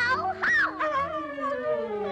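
Cartoon puppy's voice: a quick rising cry, then a long whimpering howl that falls slowly in pitch, over orchestral music.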